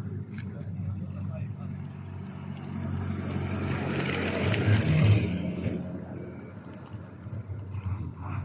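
A road vehicle passing by: its noise builds, peaks about four to five seconds in, and fades away.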